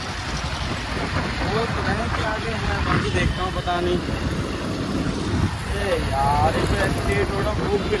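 Motorcycle riding along a road: wind buffeting the microphone over engine and traffic noise, with snatches of talk.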